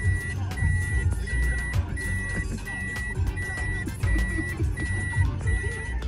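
A car's electronic warning chime beeping at one steady high pitch, about nine times at an even pace of a little under one and a half beeps a second, over music with a deep bass beat.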